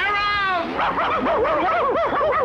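Cartoon racing dogs yapping in pursuit: one high falling cry at the start, then a quick, bouncing run of yelps, about four or five a second.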